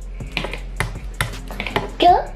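A raw egg tapped several times against the rim of a mixing bowl to crack its shell: a handful of short, sharp clicks about two a second.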